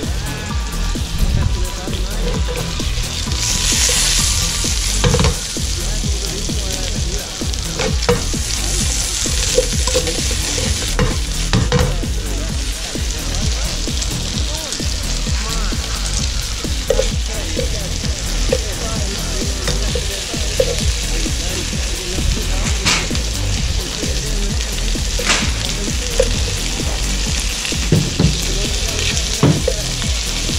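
Pieces of blue throat wrasse fillet sizzling steadily as they fry in butter in a non-stick wok, with a few sharp clicks scattered through.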